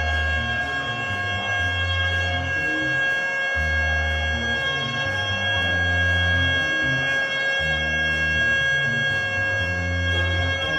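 Afrobeat band playing live: a saxophone holds one long unbroken note over a bass line that repeats about every four seconds, with drums and a cymbal ticking about twice a second.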